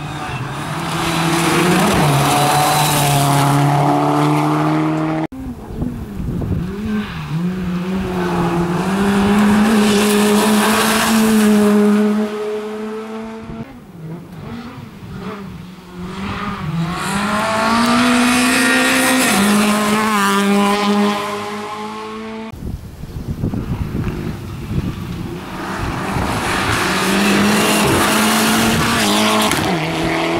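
A succession of rally cars, among them Subaru Imprezas, driven flat out on a gravel stage: each engine revs high, drops and climbs again through gear changes, with gravel and tyre noise under it. The sound breaks off abruptly three times as one car gives way to the next.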